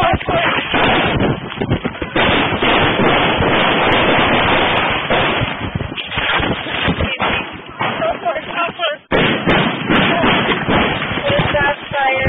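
Police body-worn camera audio during a shooting: gunshots amid loud, continuous rustling and knocking of the camera against the officer's clothing as he moves, with voices.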